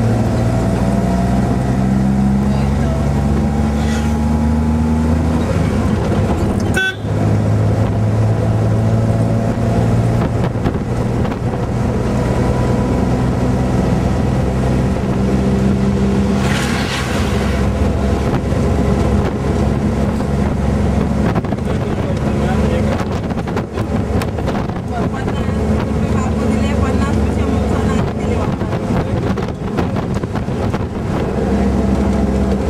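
Car engine heard from inside the cabin while driving, its pitch climbing as it accelerates and falling back at gear changes. About seventeen seconds in, a brief rush as an oncoming truck passes.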